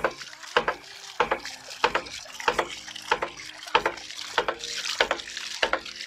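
Hydraulic ram pump cycling: the impetus valve slams shut with a sharp knock at an even beat, a little under twice a second. Between the knocks, water gushes and splashes from the valve as the pressure chamber charges up.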